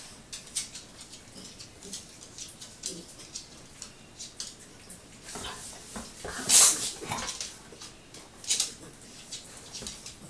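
A West Highland white terrier busy at a dog biscuit on a rug: a string of short, sharp scuffling and snuffling sounds. The loudest is a longer burst about six and a half seconds in, and another stands out at about eight and a half seconds.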